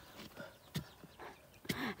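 Wooden digging stick jabbing and scraping into loose soil, giving a few soft irregular knocks.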